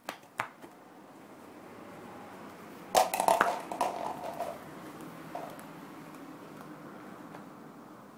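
A plastic frisbee landing on asphalt: a quick cluster of sharp clacks about three seconds in, then a short scrape as it skids and settles.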